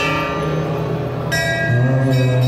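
Harmonium holding steady low notes while a brass temple bell is struck about a second and a half in and rings on.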